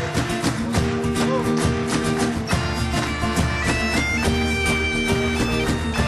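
Gaita de foles (bagpipe) playing a folk melody over its steady drone, backed by strummed acoustic guitars and steady percussion. Higher pipe notes come in about halfway through.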